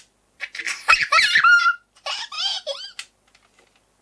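A young child's high-pitched giggling and laughter in two bursts, the first about half a second in and the second just after two seconds, with a short sharp click near the end.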